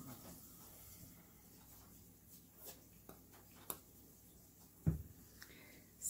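Quiet handling of craft pieces on a tabletop: a few faint clicks of small plastic heart gems being picked up and pressed into place, and a soft low thump about five seconds in.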